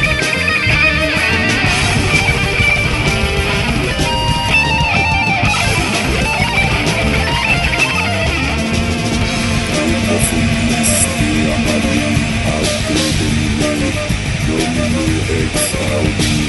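Heavy metal band recording playing at full volume: distorted electric guitars over bass guitar and drums, running on steadily.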